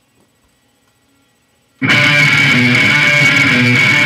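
Near silence, then a recorded rock song with distorted electric guitars starts abruptly about two seconds in and plays loudly.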